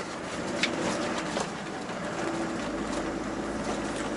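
Steady engine and road noise inside the cab of a Tata Daewoo Prima 5-ton truck while driving, with two faint ticks in the first second and a half.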